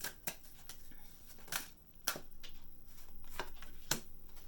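A tarot deck being shuffled and handled by hand: sharp card snaps scattered through, with a softer fluttering stretch from about two seconds in, before a card is laid on the table.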